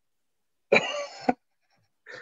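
A person's single short, sharp vocal burst, about half a second long, starting roughly three-quarters of a second in.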